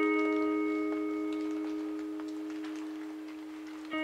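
Post-rock music: a clean electric guitar chord rings out and slowly fades, and the next notes are picked just before the end.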